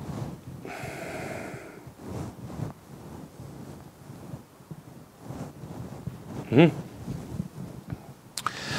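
A man's audible breath, one long breathy exhale about a second in, and a short hummed "mm" near the end, over low handling noise.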